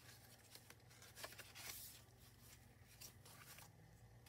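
Faint rustling and light clicks of stiff old photographs and card mounts being shuffled by hand, with a brief brighter rustle about a second and a half in.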